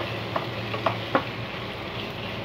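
Sliced onions frying in oil in a pan with a steady sizzle, while a spatula stirs them, scraping and knocking against the pan four or five times.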